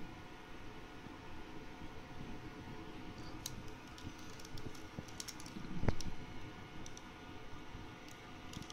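Faint handling noise of a plastic action figure being turned in the hand: scattered light clicks and rustles, with one dull thump about six seconds in.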